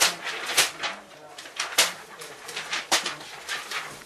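Sheets of paper pressed to inked lips and pulled away: crisp paper swishes and rustles, a sharp stroke roughly once a second, with soft mouth and breath sounds between.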